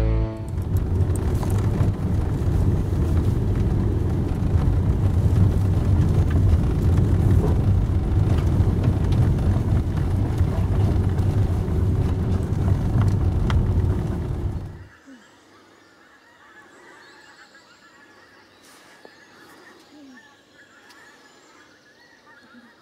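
Loud, low engine and road noise heard from inside a vehicle driving a rough track, uneven in level, that cuts off about fifteen seconds in. After the cut, faint woodland ambience with a few short distant bird calls.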